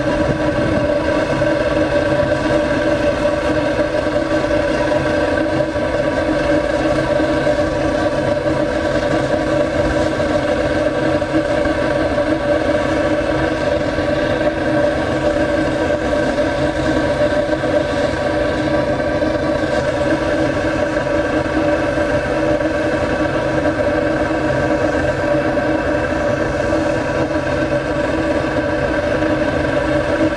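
Steady, loud droning rush of a flame and its hot exhaust blowing through a long metal exhaust pipe, with several steady tones ringing over the noise and no change throughout.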